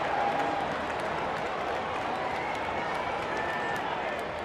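Steady ballpark crowd noise with a few faint voices rising out of it.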